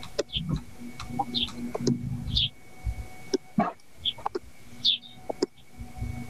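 Scattered computer mouse and keyboard clicks as a file is found and opened for screen sharing, over a faint steady hum. Short high chirps come through several times, about a second apart.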